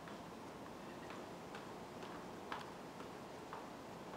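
Footsteps going down concrete steps: faint, sharp clicks at an even walking pace of about two a second over a steady hiss, one step louder than the rest about halfway through.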